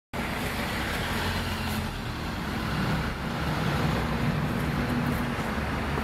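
Street traffic noise: a steady engine drone over road rumble.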